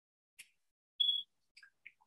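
A single short, high-pitched electronic beep about a second in, amid a few faint paper-handling ticks.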